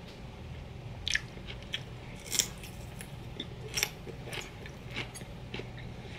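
Close-up crunching of raw celery with peanut butter being chewed: a series of separate sharp, crisp crunches, the loudest about two and a half seconds in, over a faint steady low hum.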